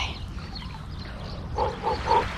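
A woman's short breathy "ooh" gasps at the shock of cold sea water, starting about one and a half seconds in, over a low steady rumble on the microphone.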